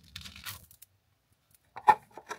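A 3D-printed plastic disc being peeled off the printer's textured build plate, heard as a faint scraping rustle, then a short sharp click near the end.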